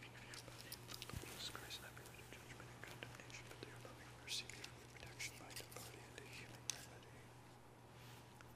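A man whispering a prayer under his breath, faint, with soft hissing sibilants and a few small clicks over a steady low hum.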